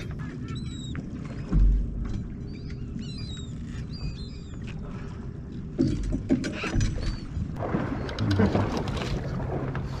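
Steady low rumble of a boat on open water, with several short, high bird calls in the first half. About halfway through come a few knocks and muffled voices.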